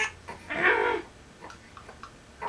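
Young infant giving a short, high-pitched vocal squawk about half a second in, just after a brief adult laugh at the start.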